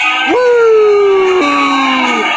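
A man howls one long note: his voice leaps up, slides slowly down, then breaks abruptly to a lower pitch and trails on downward.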